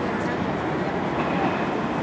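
Steady, loud city-street noise: an even rumbling roar of traffic with no distinct events.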